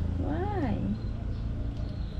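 Baby macaque giving one short call, about half a second long, that rises and then falls in pitch, over a steady low rumble.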